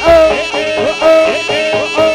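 Live jaranan music from a Javanese ensemble: a sliding, reedy melody line over a steady rhythm of drum strokes.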